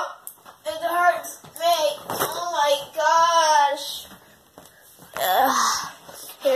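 A child's voice making wordless, sing-song sounds in short phrases, with a quieter pause about four seconds in.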